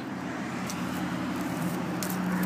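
A motor vehicle's low engine hum, steady at first and growing louder near the end, with a faint sharp crack from a dog chewing a stick less than a second in.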